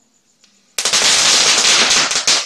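A string of firecrackers going off: a sudden, loud, rapid crackle of many small bangs, starting just under a second in.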